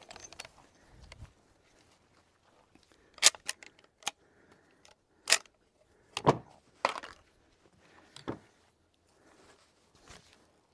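Handling noise: a scattered series of sharp clicks and clacks, about eight in all, the loudest around three, five and six seconds in.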